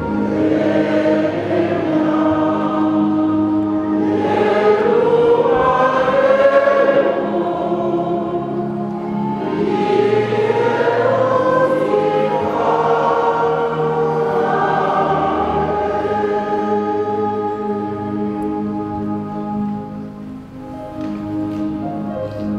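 A group of voices singing a slow hymn over long held instrumental chords.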